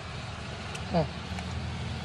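A steady low motor hum, like an idling engine, with one short spoken word about a second in.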